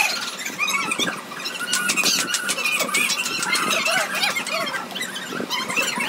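Two dogs playing together, giving many short high-pitched squeals and whines that rise and fall in pitch.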